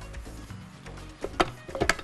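Two sharp metallic knocks as a stainless-steel stand-mixer bowl is handled and lifted off the mixer, the first about one and a half seconds in and the second near the end, over soft background music.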